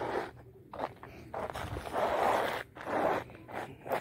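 Footsteps crunching and scraping on ground glazed with ice, a few drawn-out steps.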